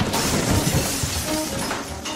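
A crashing, shattering sound effect in a radio station promo, dying away over about two seconds, with faint music under it.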